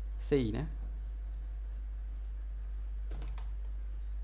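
Faint, scattered clicks of a computer mouse and keyboard as a value is typed into a dialog, over a steady low electrical hum. A short spoken syllable comes just after the start.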